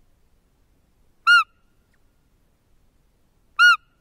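Two identical short whistled calls, each rising then falling in pitch, about two and a half seconds apart, loud against an otherwise near-silent background.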